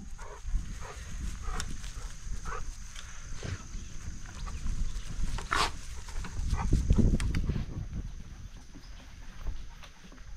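Dogs giving short, scattered yips and noises, fainter than barking, with a low rumble that builds about five seconds in and fades out by about eight seconds.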